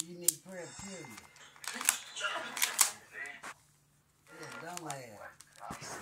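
Indistinct voices, with several sharp clicks; the loudest clicks come about two and three seconds in.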